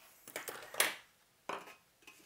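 Small metal parts handled on a workbench: soft rustling and light clicks of brass RCA jacks being picked up and set down on an aluminium chassis, with two sharper clicks near the middle and about three quarters of the way through.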